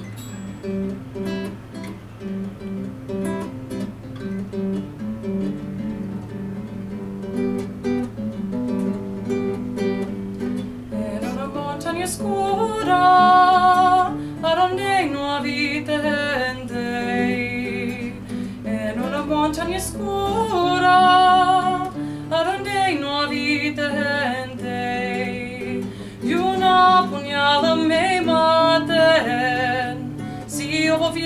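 Nylon-string classical guitar accompaniment for a Chilean tonada, played alone at first; a woman's solo singing voice comes in about a third of the way through and carries on over the guitar, with short breaks between phrases.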